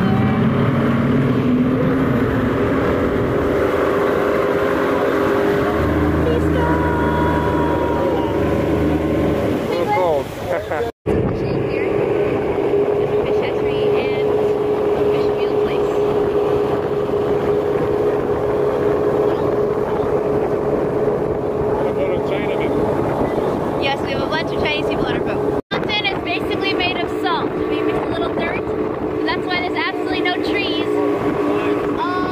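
Tour speedboat's engine running steadily under way, a loud drone with a held hum, mixed with the rush of the boat through wind and water. The sound drops out for an instant twice.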